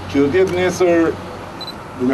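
A man speaking Albanian through a microphone: one short phrase in the first second, then a pause.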